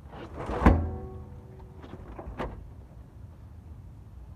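Steel water heater tank shoved into the cargo area of an SUV: a loud thunk under a second in that rings on with a metallic tone for about a second, then a second, lighter knock about two and a half seconds in.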